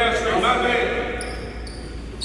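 Basketball practice on a hardwood gym court: a ball bouncing and sneakers giving short high squeaks on the floor from about a second in, with a hall echo.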